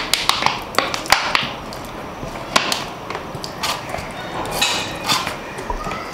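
Irregular clicks and crackles of a plastic bottle being squeezed, with a few short hissing spurts as soapy water is squirted onto a tubeless tyre to find a puncture.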